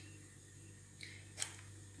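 Two faint, short clicks about a second in as an X-acto craft knife cuts through a small piece of sugar paste and meets the work board beneath, over a low steady hum.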